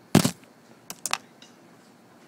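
Handling knocks as the camera is set down against a computer keyboard: one loud thump just after the start, then three quick clicks about a second in.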